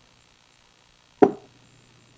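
A single short thump about a second in, over quiet room tone with a faint low hum.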